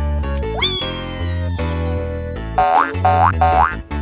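Cartoon background music with a steady bass line, overlaid with cartoon sound effects. About half a second in, a pitched tone jumps up and then slides slowly down for over a second. Near the end come three short, quick upward boing-like glides.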